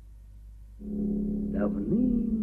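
A low, steady drone note in the film's soundtrack music comes in a little under a second in and holds. A voice begins speaking over it near the end.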